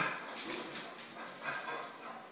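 A dog making noises in rough play as it lunges about, with a sudden loud sound right at the start, followed by a steadier, quieter, noisy stretch.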